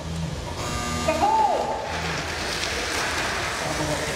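Mini 4WD cars' small electric motors whirring as the cars race round a plastic track, a dense high-pitched buzz that sets in about two seconds in.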